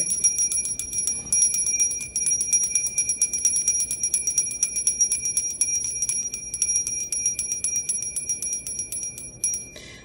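A small metal hand bell shaken rapidly and continuously, its clapper striking many times a second over a steady high ring. It stops near the end.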